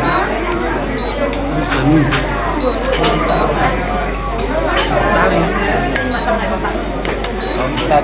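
Voices talking in a room, with a few light clicks.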